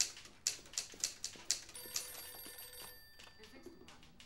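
Quick footsteps of hard-soled shoes on a hard floor, about three steps a second, fading out after about two seconds. Partway through, a telephone rings once for about a second and a half.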